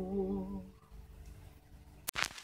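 A man's voice holding a long final note with a slow vibrato, hummed or sung on a vowel, which fades out less than a second in; then near silence with only a faint lingering tone.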